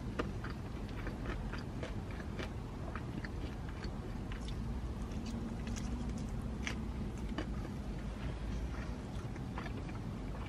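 Close-up chewing and biting of a fried chicken drumstick, with small wet clicks and crunches scattered throughout. A low steady hum sits underneath.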